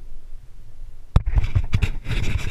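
Low wind rumble on the camera's microphone, then about a second in a sharp click followed by knocks and rubbing as a hand takes hold of the camera.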